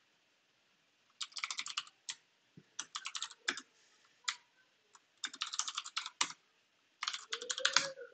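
Computer keyboard typing in several short bursts of rapid keystrokes, with pauses and a few single key presses between them, as a terminal command and then a password are entered.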